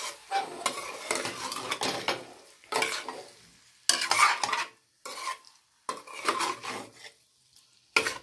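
A steel ladle stirring and scraping oily sliced green mangoes around a nonstick kadai on the stove, in a run of short strokes about a second apart that fall quiet near the end.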